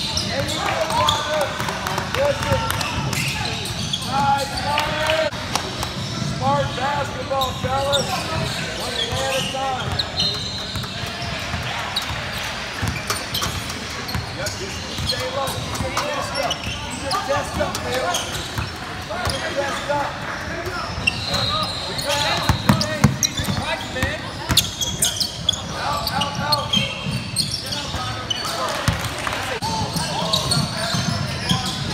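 Basketball game in a gym: a basketball bouncing on the hardwood court, with sharp knocks throughout, sneaker squeaks, and the voices of players and spectators echoing in the large hall.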